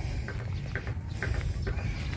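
Footsteps crunching over dry, gravelly soil, about two steps a second, over a low rumble of wind on the microphone.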